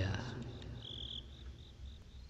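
Crickets chirping in short, repeated high-pitched pulses, while the echoing tail of a man's chanted recitation dies away in the first half second.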